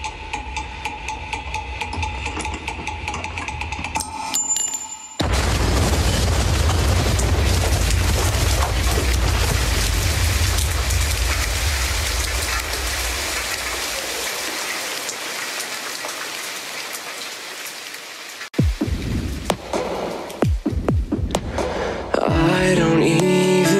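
A produced sound-effect passage between songs. A steady tone gives way about five seconds in to a sudden, loud wash of rain-like noise with a deep rumble, which slowly dies away. Near the end, low sliding tones and the start of the next song come in.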